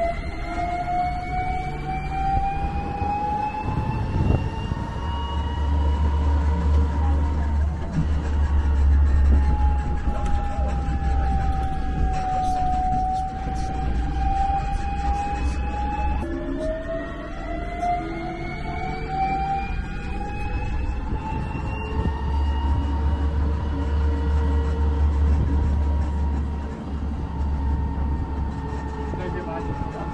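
Open-air tour shuttle riding along a paved road: a drivetrain whine climbs in pitch as it gathers speed, dips in the middle and climbs again, over a low rumble of the ride that swells twice.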